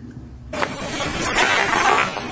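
Steady rushing noise from a police body camera's audio outdoors at night, starting about half a second in.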